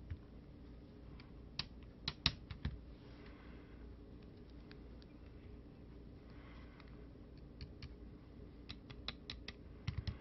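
Faint, scattered sharp clicks and taps of fingers handling a small circuit board, in two bunches, one about two seconds in and another near the end, over a quiet low room hum.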